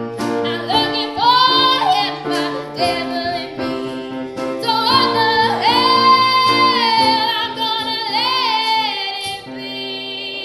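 A woman singing live pop-ballad lines in long held notes with vibrato over steady accompaniment chords. About five seconds in her voice rises to a long high note, then eases down near the end.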